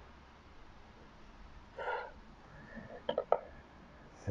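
Chef's knife slicing through a smoked venison loin on a bamboo cutting board, with a short rasping sound about two seconds in and then three sharp taps of the blade on the board a second later, the last the loudest.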